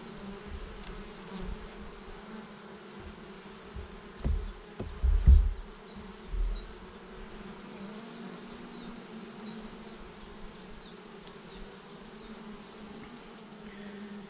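Honeybees buzzing in a steady hum over an open hive while the frames are worked. A few dull thumps sound about four to six and a half seconds in, the loudest moments, as a frame is handled in the wooden hive box.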